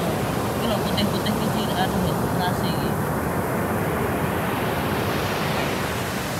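Sea surf on a sandy beach: a steady rush of breaking waves that swells louder over the last couple of seconds.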